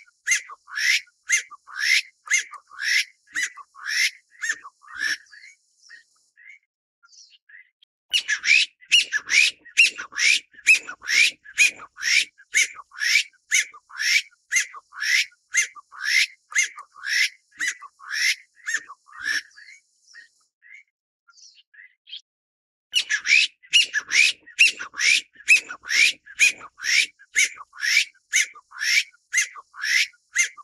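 Taiwan bamboo partridge calling: a loud series of shrill, rapidly repeated notes, roughly two and a half a second. The calling comes in three bouts, broken by short pauses about six and about twenty-one seconds in.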